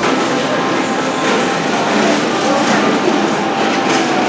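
Steady rushing background noise of a busy indoor shopping mall, with faint voices mixed in.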